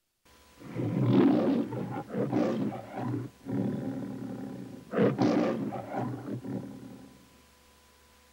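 The MGM lion's recorded roar from the Metro-Goldwyn-Mayer logo: two roars, each a run of short loud pulses, the first starting about half a second in and the second about five seconds in, fading out about seven seconds in.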